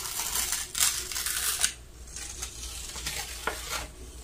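Sheets of sublimation transfer paper being peeled off heat-pressed polyester t-shirts, rustling and crackling for about the first second and a half, then a few light paper ticks as the sheets are lifted clear.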